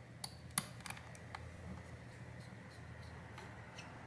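Faint small clicks and ticks of a precision screwdriver working a tiny screw in a metal bracket inside a tablet: several sharp clicks in the first second and a half, then softer, sparser ticks.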